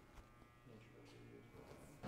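Near silence: a faint steady electrical buzz, with faint distant voices in the middle and a soft click just after the start.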